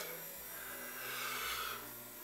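A soft breath close to the microphone, one exhale starting about half a second in and lasting a little over a second, over a faint steady hum.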